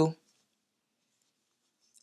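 The end of a spoken word, then near silence: the audio is dead quiet, with no audible hook or yarn sound.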